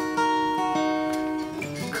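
Steel-string acoustic guitar strummed, a chord ringing out with a change of notes about three quarters of a second in.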